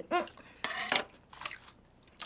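Tableware being handled: short clinks and clatters of metal chopsticks and plastic food containers. The loudest comes about half a second in and a weaker one about a second later.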